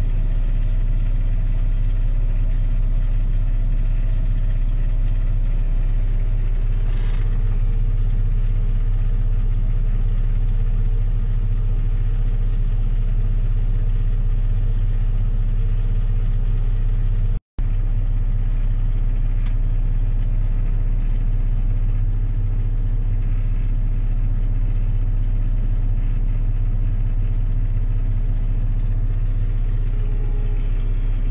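Steady low drone of a tractor engine heard from inside its cab, running alongside a Claas Tucano combine harvester that is unloading grain. The sound drops out for a moment a little past the middle.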